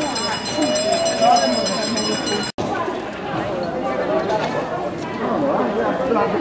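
Many people talking at once: a steady crowd murmur of overlapping voices, with no one voice clear. The sound breaks off for an instant about two and a half seconds in, then the chatter resumes.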